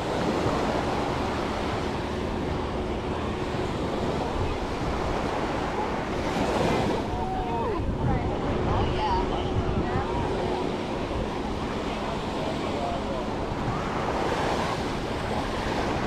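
Small ocean waves washing up onto a sandy beach in a steady hiss, swelling as a wave runs up the shore about six seconds in and again near the end.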